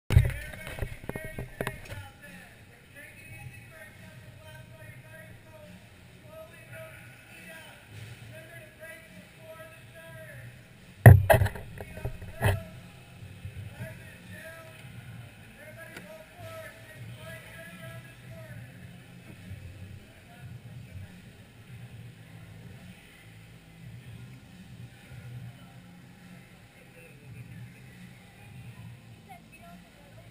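Indoor karting-hall ambience: distant voices talking over a low steady hum. Several sharp knocks come near the start, and two more at about eleven and twelve seconds in.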